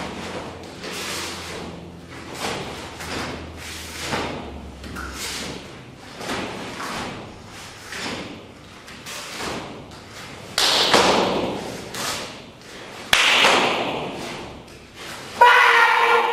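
Bare feet stamping on foam mats and a taekwondo uniform snapping with each strike and stance change of a poomsae form, about one movement a second, with three louder thuds in the second half.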